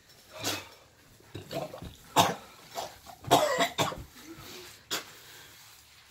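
A man coughing in a string of harsh coughs, the loudest about two seconds in and a cluster around three and a half seconds, his throat burning from a superhot pepper chip.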